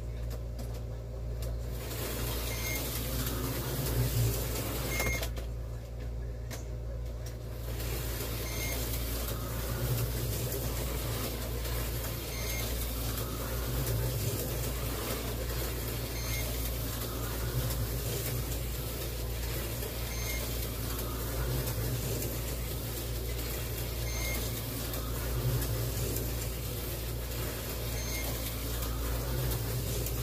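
Tyco 440-X2 slot cars running around the track, their small electric motors whirring, with a brief pause about six seconds in. A short electronic beep from the race computer comes every few seconds over a steady low hum.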